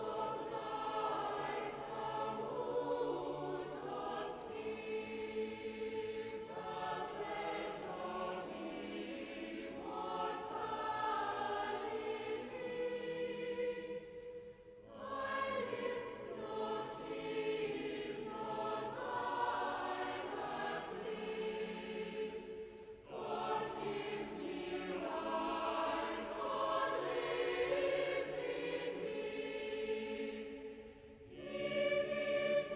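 Choir singing sacred music in long, held phrases, breaking off briefly twice.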